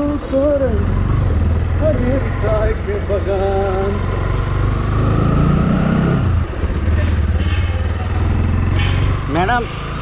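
Single-cylinder Bajaj motorcycle engine running at low road speed, with the engine note rising about five seconds in and easing back a second later.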